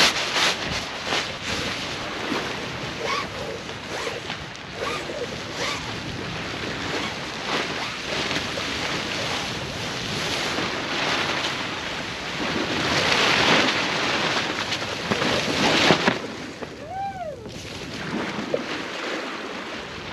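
Wind buffeting the microphone over the wash of the sea, with rustling of spinnaker cloth and lines as the asymmetrical spinnaker is hoisted and pulled out of its sock; the rush grows louder about two-thirds of the way through as the sail fills. A brief squeak near the end.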